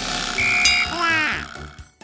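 Cartoon sound effects for pink liquid pouring from a pipe into a wagon: a rushing pour, a short high beep with a ding about half a second in, then a quick falling warble, over a background music beat.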